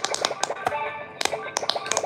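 Silicone bubble buttons of a handheld quick-push pop-it game toy being pressed in a fast, irregular run of clicks, over the toy's electronic tune and beeps.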